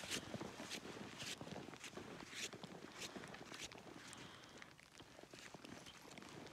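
Faint footsteps in snow at a steady walking pace, about two steps a second.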